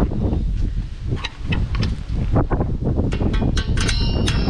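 Wind buffeting the microphone, with a scatter of sharp metallic clicks and scrapes as a brake spring tool stretches a drum-brake return spring over the top anchor pin. Near the end there is a short high metallic ring.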